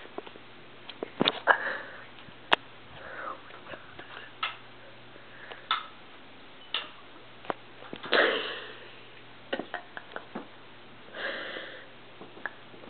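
Hushed, breathy sniffs and puffs of air through the nose, like stifled snickering, among scattered small clicks and rustles. The longest puff, about a second long, comes near the end, with another shortly after.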